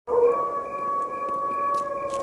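Wolf howl sound effect: one long howl held at a steady pitch.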